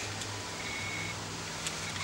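Quiet background with a steady low hum. A faint thin high note sounds briefly near the middle, and one small click comes near the end.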